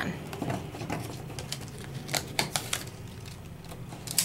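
Sticky notes being peeled up off a stencil and card, with paper rustles and a scattering of light clicks and taps.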